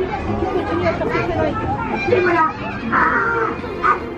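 Several people talking and calling out, overlapping, with a brief high-pitched voice about three seconds in.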